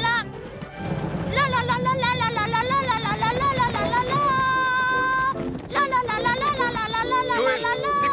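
A boy's loud, high-pitched wordless 'la la' singing, wavering with heavy vibrato and holding a long note, in two stretches with a short break between, over background film music. It is the noise that scares the sheep.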